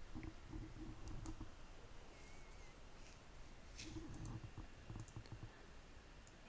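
Faint, scattered clicks of a computer mouse and keyboard, with soft low thuds around a second in and again about four seconds in.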